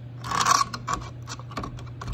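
Pattern-welded steel knife blade scraping and clicking against the rim of a glass jar as it is lowered into etching acid: one longer scrape about half a second in, then a run of light clicks, over a steady low hum.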